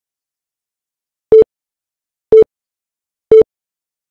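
Interval timer counting down: three short, identical beeps one second apart, marking the last seconds of the interval before the next exercise begins.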